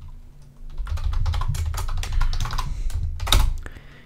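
Typing on a computer keyboard: a quick run of keystrokes that starts a little under a second in and stops shortly before the end.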